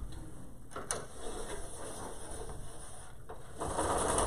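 A pull-down graph-grid chart being drawn down from its spring roller above a chalkboard: a click about a second in, then the rustle and whir of the sheet unrolling, louder near the end.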